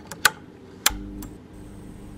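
Intro sound effect of a neon sign switching on: two sharp clicks a little over half a second apart, then a low electric hum that sets in at the second click.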